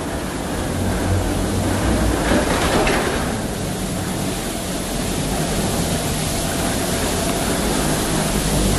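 Steady low rumble and hiss of a passenger boarding bridge at an airport, with a faint steady whine running through it.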